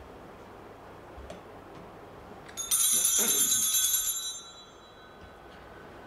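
Altar bells, a cluster of small hand bells, shaken in one ringing, jangling burst of about a second and a half starting about two and a half seconds in, then fading. Rung at the elevation of the chalice, they mark the consecration at Mass.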